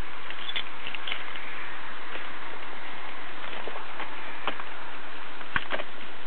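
Steady static hiss from a police dashcam's audio feed, with scattered light clicks and two sharper ticks near the end.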